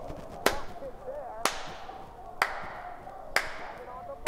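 Slow hand clapping: four single claps about a second apart.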